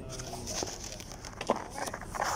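Paper test forms rustling as they are handled close to the microphone, with a sharp click about one and a half seconds in and faint voices behind.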